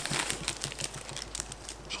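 A small plastic zip bag of screws being handled: the plastic crinkles and rustles in a run of quick irregular clicks.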